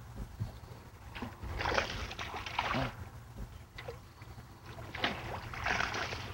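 A hooked bass splashing and thrashing at the surface as it is swept into a landing net, in two bursts: about two seconds in and again near the end. A steady low rumble runs underneath.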